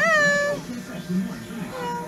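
Amazon parrot giving a meow-like call that rises and is then held for about half a second. A shorter, fainter call follows near the end.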